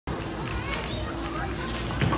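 Bowling-alley background din: children's high voices and chatter over a steady low hum.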